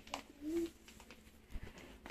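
A young child's short cooing vocal sound, one brief pitched call about half a second in, with a sharp click just before it and a low thump later.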